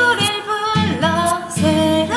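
A woman singing a Korean pop song over a backing track, her voice sliding between held notes on the line '새롭게 희망의 노랠 불러'.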